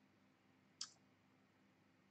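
Near silence: room tone, with one faint short click a little before the middle.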